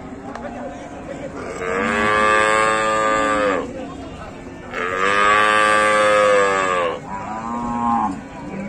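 Cow mooing: two long moos of about two seconds each, then a shorter third moo starting near the end.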